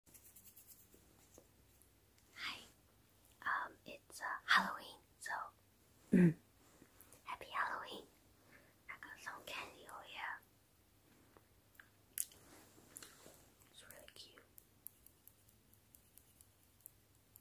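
Close-mic'd whispering, with a short voiced "mm-hmm" about six seconds in. After that the voice stops and only soft, scattered clicks are heard.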